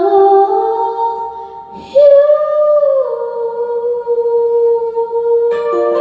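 A young male singer holding long, sustained notes into a handheld microphone over an instrumental accompaniment. The note steps upward, leaps higher about two seconds in, slides down a second later and is held, and the accompaniment changes chord near the end.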